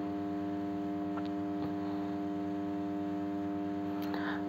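A steady hum made of several even, unchanging pitches, with two faint ticks a little over a second in.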